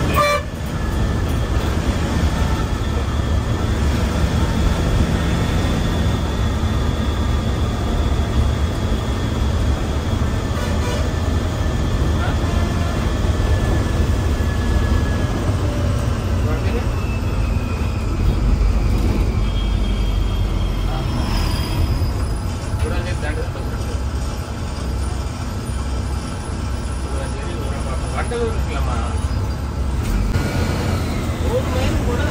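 Steady engine and road rumble heard from inside a moving AC sleeper bus, with vehicle horns tooting briefly a few times.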